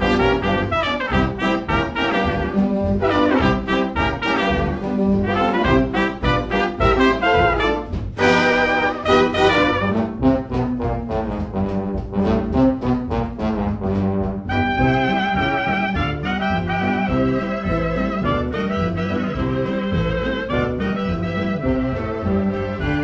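Hot jazz band playing an instrumental swing passage, with brass (trumpet and trombone) leading over a steady rhythm-section beat. About two-thirds through, the texture changes to a lighter, higher line.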